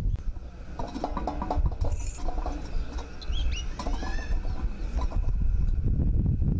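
Birds chirping in short, high calls with quick rising and falling glides, mostly between about one and four and a half seconds in, over a steady low rumble.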